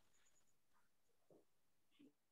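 Near silence on a video-call line, with only very faint traces of sound.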